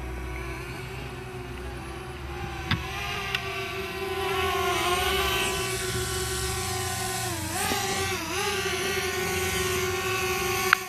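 A quadcopter drone's propellers whining steadily while it hovers low, the pitch wavering and dipping twice near the end as the motors change speed. Two short clicks come about three seconds in.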